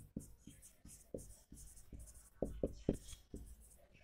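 Marker pen writing a word on a whiteboard: a quick run of faint taps and scratchy strokes, loudest in a short cluster a little past halfway.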